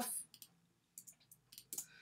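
Several faint, short clicks of a computer mouse and keyboard, scattered irregularly through the two seconds, as layers and effects are deleted in editing software.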